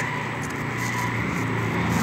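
Motor vehicle engine running in street traffic, a steady low hum without a break.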